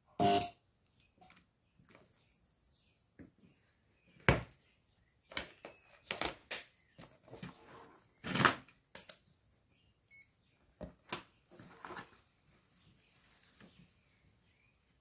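Irregular clicks and knocks of a multimeter and its test leads being handled and set down on a wooden workbench. The loudest knock comes right at the start and another about eight seconds in.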